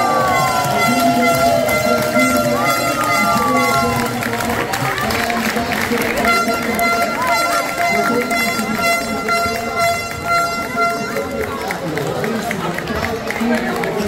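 Basketball crowd in a gym cheering and shouting as the game ends. A steady horn-like tone is held for about five seconds midway.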